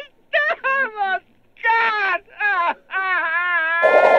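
A man wailing and sobbing in comic despair: a few short sobs that fall in pitch, then one long, wavering wail. Just before the end a sudden loud rushing noise cuts in over it.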